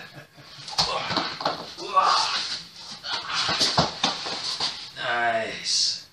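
Laughter and indistinct voices, with a couple of sharp thumps of a body going down onto foam floor mats during a knife-defence takedown.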